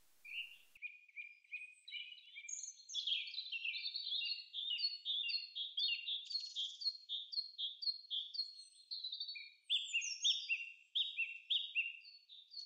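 Forest birdsong: several birds chirping in quick, short, overlapping calls, sparse at first and getting busier from about two and a half seconds in.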